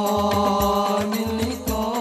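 Male voices singing an Arabic devotional song into microphones, holding one long note that bends slightly upward near the end, over a steady low beat about three times a second.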